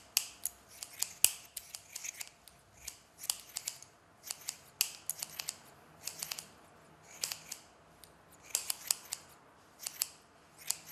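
Scissors snipping through hair close to the scalp: many short, sharp snips in irregular runs of two to four, with short pauses between.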